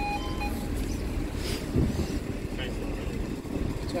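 Level crossing's two-tone audible warning alarm sounding in alternating notes, stopping less than a second in, after which a steady low rumble remains.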